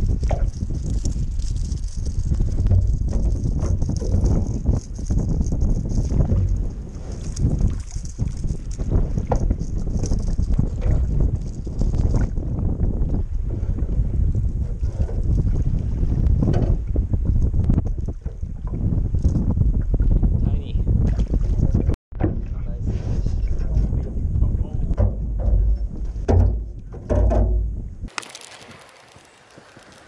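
Wind buffeting an action-camera microphone on a small boat on choppy water, a dense low rumble with water sloshing against the hull. It breaks off for an instant about two-thirds of the way through, and near the end it drops away to a much quieter stretch.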